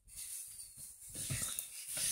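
Faint breathy, panting sounds from a young boy as he climbs onto a bed, with soft rustling from the comforter under his hands.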